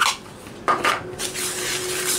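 A spatula scraping and stirring dry cake mix and cocoa powder in a plastic mixing bowl: two light knocks a little before the middle, then steady scraping through the second half.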